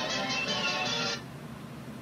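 DVD main-menu music playing through a TV's speaker, cutting off suddenly about a second in as the TV is switched off. A faint low hum remains after it.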